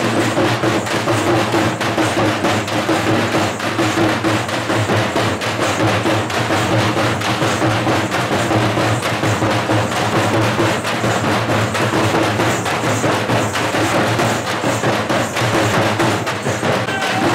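A band of several large double-headed drums beaten with sticks, playing a fast, dense, continuous rhythm without a break.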